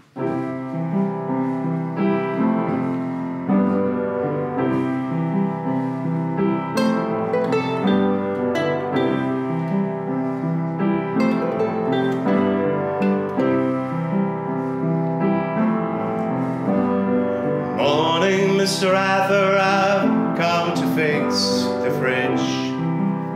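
Upright piano playing a steady chordal introduction to a song. Near the end a higher, wavering pitched sound joins for a few seconds.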